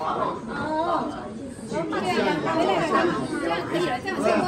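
Speech only: several people talking, their voices overlapping in chatter.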